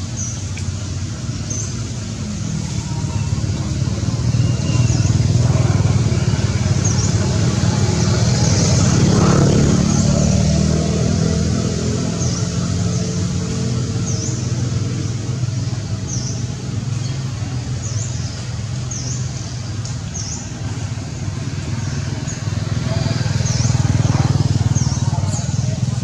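Outdoor background noise: a low, engine-like rumble that swells twice and fades, with short high chirps repeating every second or two.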